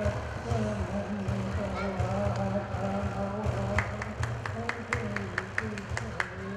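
Innu frame drum (teueikan), with snare cords strung across its head, beaten with a wooden stick in a steady fast pulse while a voice chants along. From about four seconds in, a run of sharp clicks comes in at about four or five a second.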